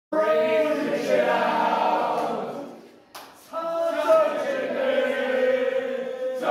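A group of people singing loudly together with no audible backing music, the way silent-disco dancers sing along to music heard only in their headphones. The singing fades out about halfway, and after a click and a brief gap it starts again.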